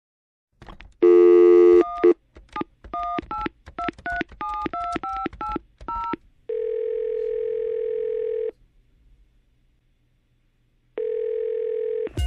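A landline telephone call being placed. A click and a brief, loud dial tone come first, then about a dozen two-note touch-tone beeps as a number is keyed in. Then the ringback tone in the earpiece: one two-second ring with a wavering pulse, a four-second pause, and a second ring starting near the end.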